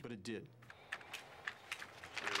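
Faint typing on a computer keyboard: a few scattered key clicks, after a man's voice trails off at the start.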